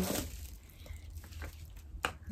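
Faint handling of small cardboard packaging: a few light taps and rustles as a lip gloss box is lifted out, over a low steady hum.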